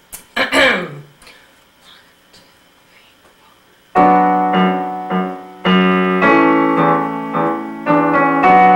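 A Yamaha stage keyboard set to a piano sound starts the opening chords of a song about four seconds in. The chords ring on and are struck again every second or so.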